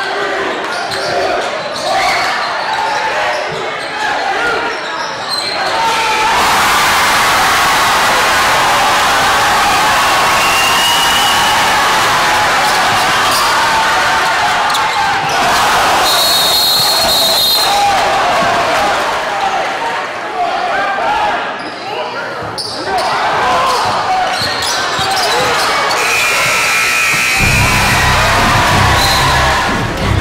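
Live basketball game sound in a gymnasium: a ball dribbling on the hardwood, sneakers squeaking and a crowd of voices, loudest partway through. Background music comes in near the end.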